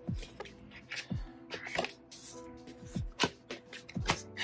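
Soft background music with tarot cards being shuffled and handled, several short flicks and slaps of card on card.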